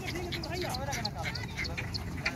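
Men's voices calling and shouting in a crowd, loudest in the first second, with short high-pitched chirps dotted through.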